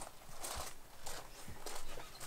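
Quiet background with two soft, low thumps about a second apart.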